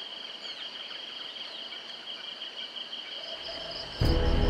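Steady insect chorus: one continuous high trill with a second, pulsing trill above it, joined by a few short bird chirps about half a second to a second in.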